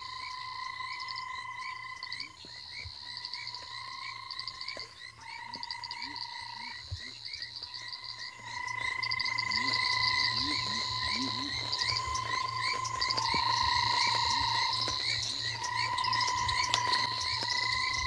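A dense chorus of several frog species calling together. The loudest is a long, steady whirring trill, the call of the banded rubber frog, repeated over and over, with shorter rising calls from other frogs underneath. The chorus grows louder about halfway through.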